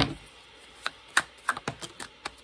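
Tarot deck being shuffled by hand. A sharp knock at the very start is followed by a few irregular, sharp clicks of cards snapping against one another.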